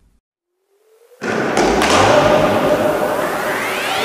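Intro sound effect: near silence, then a sudden loud hit a little over a second in, followed by a rising sweep that climbs steadily in pitch as a build-up into electronic music.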